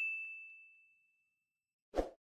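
Notification-bell 'ding' sound effect from a subscribe-button animation: one high, clear tone ringing out and fading over about a second and a half. A short dull thump comes right at the end.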